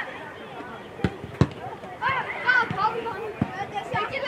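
Two sharp thuds of a football being kicked about a second in, a third of a second apart, the second the louder, followed by children shouting and calling on the pitch.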